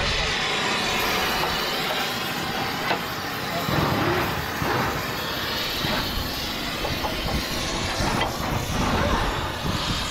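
Gas cutting torch burning with a steady, loud hiss against a steel truck chassis frame, with a few faint metal knocks.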